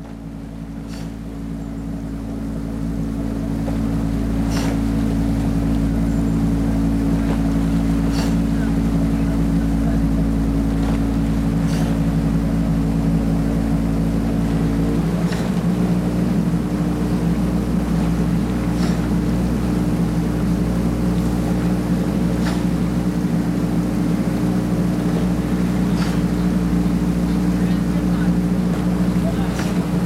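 Outboard motor of a coaching launch running steadily as it keeps pace alongside a rowing eight. Its sound builds over the first few seconds, and its note shifts to a different pitch about halfway through.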